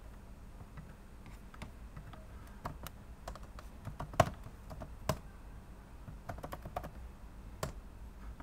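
Irregular keystrokes on a computer keyboard typing a terminal command, with a few sharper, louder clicks about four and five seconds in.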